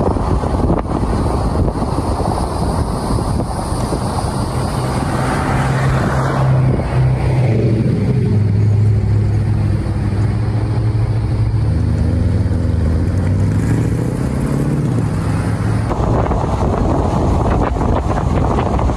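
Car on the move: wind and tyre rush at speed, easing off about five seconds in to a low steady engine drone as the car slows, then wind and road noise building again near the end.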